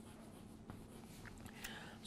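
Chalk writing on a blackboard, faint, with light scratching and a few soft taps of the chalk.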